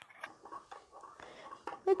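Metal spoon stirring milk in a glass mug, with faint scattered clicks and scraping against the glass, and a spoken word near the end.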